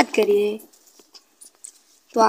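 A man's voice speaking for about the first half-second, then near quiet with a couple of faint clicks.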